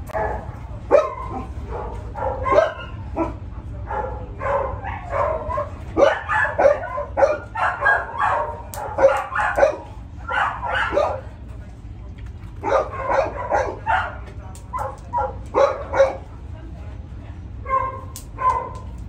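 A dog barking in runs of short, sharp barks with pauses between, over a steady low hum.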